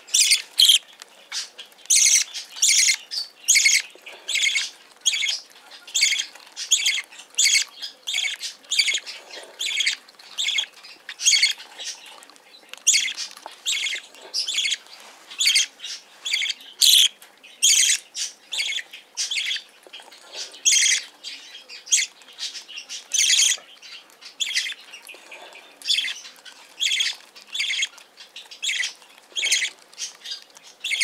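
Budgerigar chick giving short, harsh begging calls over and over, about one or two a second, while it is hand-fed formula.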